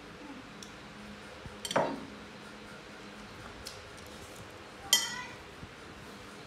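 Two short, sharp clinks of tableware, a bowl, plate or spoon knocked on the table, about two seconds in and again, louder, about five seconds in, over a quiet room background.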